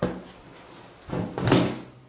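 A jacket being dropped onto a table: two dull thumps, the louder about one and a half seconds in.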